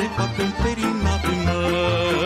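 Romanian folk orchestra playing an instrumental passage between sung verses: a violin melody over a steady pulse of low bass notes.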